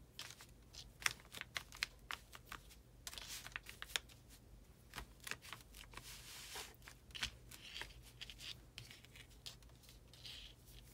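Hands pressing and smoothing a piece of lace onto a glued paper cover, with faint rustling of fabric and paper and scattered light clicks and taps.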